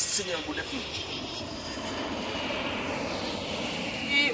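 Airplane flying overhead: a steady engine rush that builds slightly over a few seconds, after a brief word from a man at the start.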